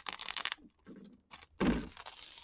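Mylar film crinkling and tearing in short, irregular bursts as it is peeled away from machine-embroidered stitching, ripping along the needle perforations. The loudest crackle comes near the end.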